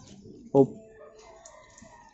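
One short spoken word, then a faint bird call in the background, held on a few steady tones for about a second.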